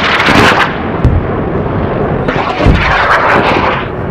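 Electric crackling and zapping sound effect, loud and noisy throughout, with surges of crackle near the start and again past the middle and a couple of deep thuds.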